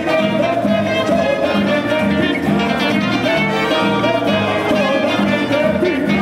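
Live bomba y plena band music: hand drums keep a steady beat of about two pulses a second under a wavering melodic line.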